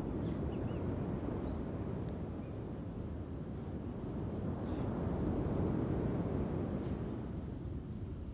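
Wind blowing on the microphone: a steady rumbling noise that swells and eases, strongest about five to six seconds in.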